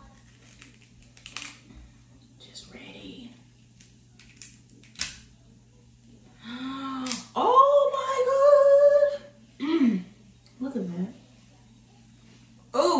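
A few faint cracks and clicks as a steamed crab knuckle is pulled apart by hand. Then a woman's long, high, steady vocal "ooh" of relish, followed by two short "mm" sounds.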